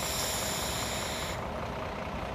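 A draw on a vape (e-cigarette): a high-pitched hiss that starts suddenly and cuts off after about a second and a half. Under it is the steady low rumble of idling bus and truck engines.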